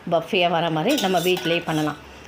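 A woman speaking, with a brief metallic clatter of a utensil against a cooking pan about a second in.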